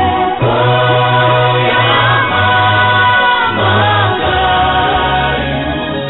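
Gospel choir singing long held notes with sliding pitches over a steady, stepping bass accompaniment.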